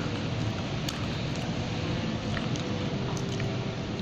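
Steady background noise of a fast-food restaurant dining room, with a few faint clicks.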